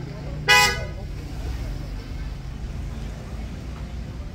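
A single short vehicle horn beep about half a second in, the loudest sound, over the steady low rumble of street traffic.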